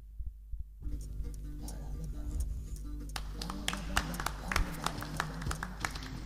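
Lo-fi 1980s tape recording of a rock band playing an instrumental intro. The sound thins out briefly at the start; about three seconds in, a melodic line comes in over a steady drum beat.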